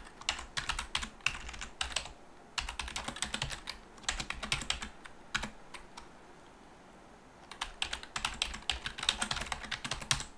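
Computer keyboard typing: runs of quick keystrokes entering a shell command, with a pause of about three seconds near the middle before the typing picks up again.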